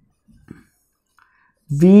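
Faint, short scratches of a marker writing on a whiteboard, with a man's voice starting near the end.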